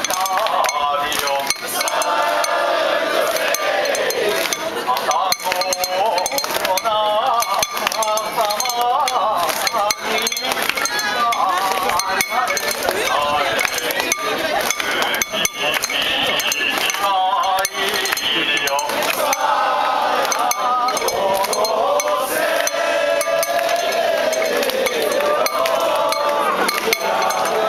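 A crowd of festival bearers chants and calls together while metal fittings on a lantern-hung mikoshi (portable shrine) jingle and clink without pause as it is jostled.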